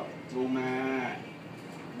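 A man's voice drawing out a spoken Thai instruction, 'ลงมา' ('bring it down'), into one long, steady, held note.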